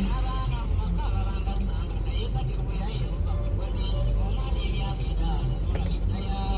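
Heavy trucks' diesel engines running close by, a low steady rumble, with faint voices behind it.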